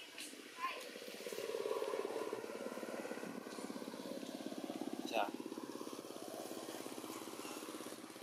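A small engine running steadily with a fast, even pulse, starting about a second in.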